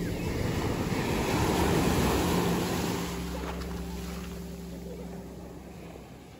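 Sea surf breaking and washing through the shallows, loudest about two seconds in, then fading away toward the end. A faint steady low hum runs underneath.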